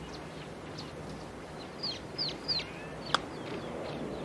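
Birds calling in short downward chirps. About three seconds in comes a single crisp click of a golf club striking the ball on a short chip shot.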